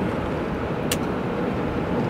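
Steady road and engine noise heard from inside a moving car's cabin, with a single sharp click about a second in.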